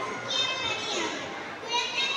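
A young girl giving a speech in Tamil into a microphone.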